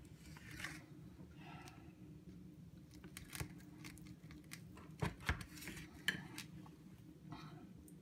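Kitchen knife cutting down through a cheesecake and its graham cracker crust: faint scraping with a few light clicks as the blade meets the plate, over a low steady hum.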